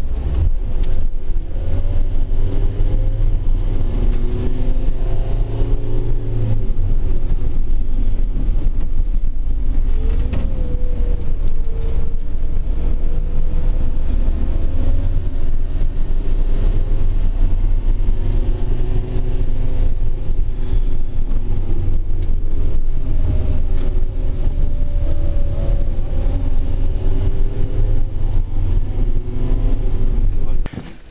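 A vehicle's engine and road noise heard from inside the cab while driving: a loud steady low rumble, with the engine note rising and falling as the vehicle speeds up and slows.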